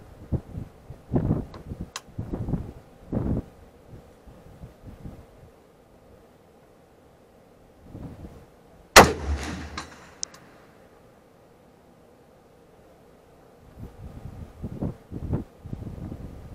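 A single shot from an SKS rifle in 7.62×39, sharp and loud, about nine seconds in, with a short echo trailing off. Gusts of wind buffet the microphone in the first few seconds and again near the end.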